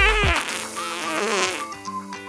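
Comic fart sound effect: a wavering, falling pitched rasp lasting about a second and a half, over background music.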